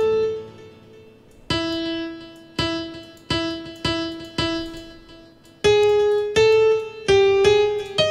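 FL Keys virtual piano in FL Studio sounding single notes one at a time, each struck and left to ring out. After a short pause, one lower note repeats about six times at uneven spacing, then higher notes come in louder near the end.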